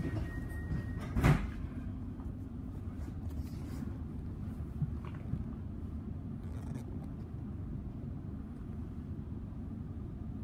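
Steady low rumble inside an electric suburban train carriage, with one loud knock about a second in. A thin high tone cuts off just before the knock.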